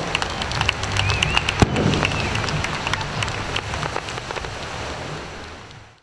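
Fireworks crackling, a dense run of rapid small pops like heavy rain, with one sharper bang about a second and a half in. The sound fades out near the end.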